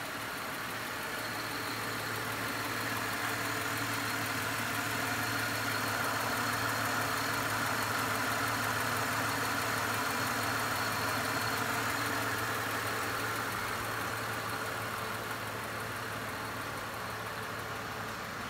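A 1997 Acura RL's 3.5-liter V6 idling steadily, slightly louder in the middle of the stretch.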